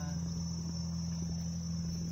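Insects trilling steadily at a high pitch in a mangrove forest, over a steady low hum, with a brief short call at the very start.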